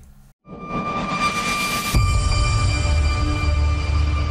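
Logo-intro sound design: a rising whoosh swells for about a second and a half, then a deep bass hit about two seconds in gives way to a sustained low, dark drone with steady high tones.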